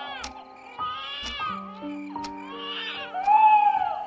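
Slow, soft background music of held notes. A high voice-like call rises and falls over it twice, about a second in and again near the end.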